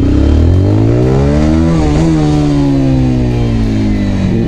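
Honda CBR125R's single-cylinder four-stroke engine under way, geared down with a 14-tooth front sprocket for quicker acceleration. Its revs rise for about two seconds, then ease slowly down.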